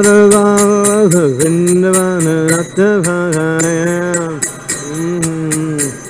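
A man singing a slow devotional chant in long held notes, about a second each, gliding between them, with small hand cymbals (kartals) struck at a steady beat of about four a second.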